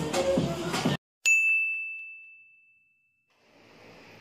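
Music and children's voices cut off abruptly about a second in. After a moment of silence comes a single high, bell-like ding that rings away over about two seconds, an editing transition sound effect.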